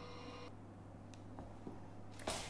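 Quiet room tone with a steady low hum and one faint click near the end.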